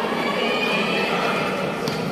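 Several high-pitched voices shouting and calling over one another, echoing in a large indoor sports hall, as kho-kho players and supporters cheer on a chase.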